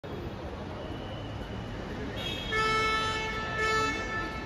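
Car horn honking twice, a long honk and then a short one, over a steady hum of traffic.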